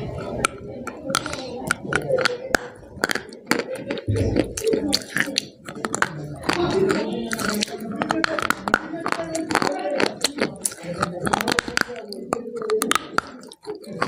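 Close-miked biting and chewing of a dry, crumbly white block: many sharp crunching clicks scattered through, over mouth sounds.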